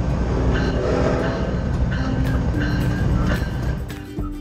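A passing train's rumble mixed with music, the rumble dropping away near the end.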